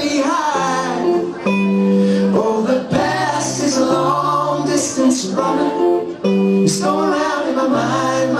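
Live acoustic duo music: a strummed acoustic guitar and a white hollow-body electric guitar play sustained chords under a male voice singing.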